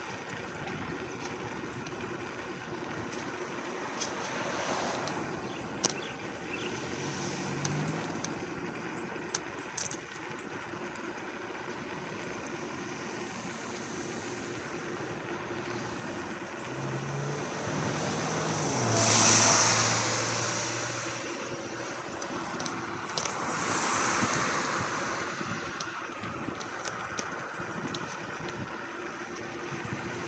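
Steady wind and road noise on a moving scooter, with passing cars swelling up and fading away: once a few seconds in, then louder past the middle, and again a few seconds later.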